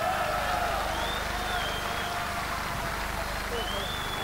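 Crowd noise in a boxing hall: many voices talking at once in a steady din, with a high whistle rising and falling about a second in and again near the end.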